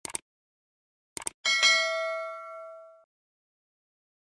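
Subscribe-button animation sound effect: two quick mouse clicks, two more about a second later, then a notification bell ding that rings out for about a second and a half.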